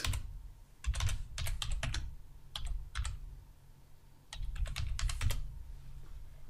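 Typing on a computer keyboard: quick keystroke clicks in three short runs with brief pauses between them.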